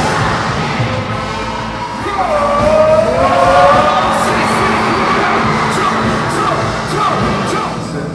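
Live band music with a singing voice and a crowd cheering; a long, wavering sung line stands out in the middle.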